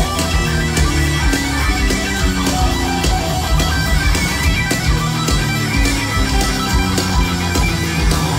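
Live hard rock band playing loud and steady: electric guitar riffing over bass and a drum kit, with regular drum hits, heard through the stage PA from the audience.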